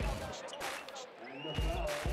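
Basketball game sound on an indoor court: a ball bouncing on the hardwood a few times in pairs, with a high squeak late on, over arena voices.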